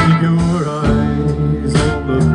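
Live band playing amplified guitars and drums, with sharp drum hits at the start and near the end over a held low bass line.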